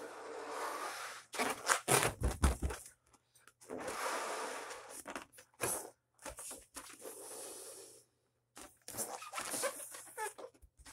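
A latex heart balloon being blown up by mouth: long breaths pushed into it, each one to two seconds long, with pauses for breath between. Louder short bursts of breath and rubbing of the rubber come about one and a half to three seconds in.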